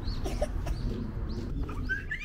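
Birds in the park trees calling, a string of short, high calls each dropping in pitch, several a second, over a low steady rumble.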